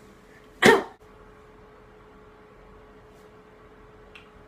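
One short, sharp, breathy vocal burst from a boy, well under a second, about half a second in. A faint steady hum follows.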